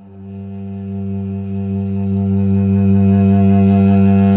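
Two cellos bowing a long, low sustained note that swells steadily louder.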